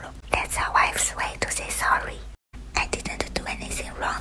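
A person whispering, the words indistinct, broken by a brief gap of silence a little past the middle.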